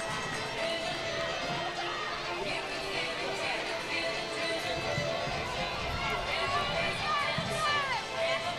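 Track-stadium ambience: faint voices of spectators and officials with music playing in the background.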